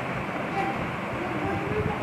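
Steady background noise with faint voices in the distance.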